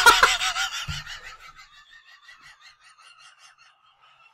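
A woman laughing hard: loud at first, then trailing off about a second in into faint, quick, breathy pulses of near-silent laughter.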